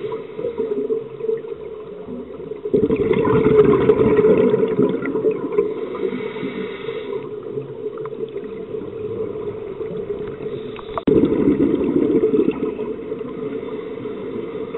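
Scuba diver's regulator exhaust bubbles heard underwater: a long rush of bubbles about three seconds in and a shorter one about eleven seconds in, each a breath out, over a steady low underwater hum.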